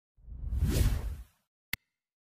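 A whoosh sound effect that swells and fades over about a second, followed by a single short click near the end.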